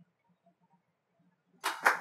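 Near silence, then about a second and a half in, two short, sharp noisy bursts close together, each trailing off quickly.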